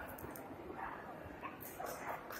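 A dog barking and yipping in a few short, separate yaps.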